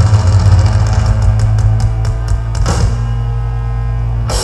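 Thrash metal band playing live through a PA: a low guitar and bass chord is held ringing, with a quick run of sharp hits, about six a second, in the middle. A louder crash comes about two-thirds through, and the highs thin out near the end.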